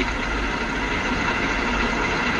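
Steady background rumble and hiss in a pause between spoken phrases, with no clear events in it.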